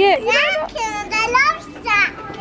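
A young girl's excited, high-pitched voice: short exclamations, then a longer wavering squeal about a second in.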